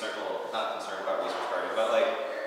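A man's voice speaking indistinctly, too low to make out the words.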